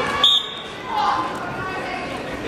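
A referee's whistle: one short, shrill blast about a quarter second in, starting the wrestling bout, with voices around it.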